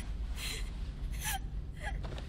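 A young girl's crying gasps: three short breathy sobs, over a low steady hum.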